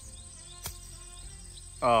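A golf club striking a ball from the grass: one sharp click about two-thirds of a second in.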